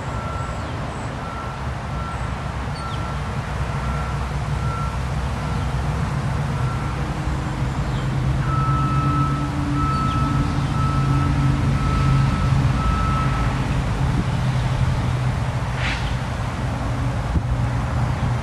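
A vehicle engine running with a reversing alarm beeping at a steady pitch, about one beep every second, until the beeping stops near the end. The engine grows louder partway through, and faint bird chirps come over it.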